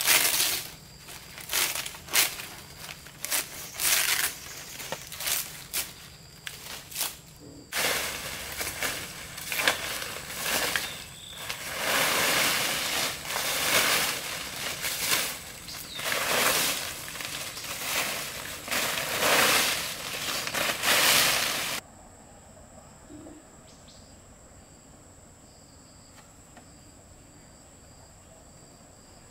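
Large dry palm leaves rustling and crackling as they are handled and laid on a roof, then leaves rustling and being cut with a blade in dense, irregular strokes. About three quarters of the way through this stops abruptly, leaving a quiet, steady high chirring of forest insects.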